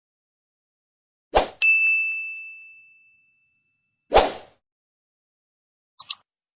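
A sharp hit followed at once by a single bright ding that rings out and fades over about a second and a half, then a second hit with no ring a few seconds later, and two quick clicks at the very end, in otherwise dead silence.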